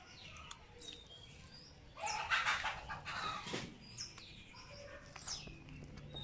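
Small birds chirping repeatedly, each call a short note falling in pitch. About two seconds in comes a louder rough noise lasting about a second and a half.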